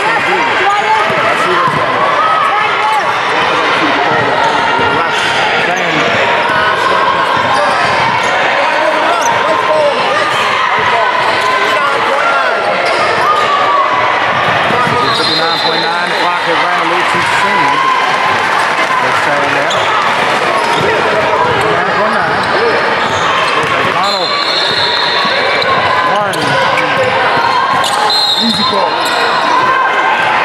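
Busy gymnasium hubbub: many overlapping voices from players and spectators, with a basketball bouncing on the hardwood floor. A few short high-pitched tones stand out about halfway through and again near the end.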